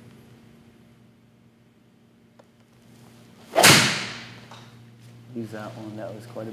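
Golf iron swung and striking a ball off a hitting mat: a short rising swish, then one sharp strike about three and a half seconds in that rings out for about a second. A low steady hum runs underneath.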